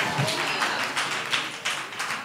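Scattered hand clapping: a quick, irregular run of sharp claps.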